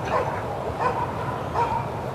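A dog barking repeatedly, about three short barks less than a second apart.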